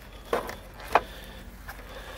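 Two brief knocks, about half a second apart, over faint background noise.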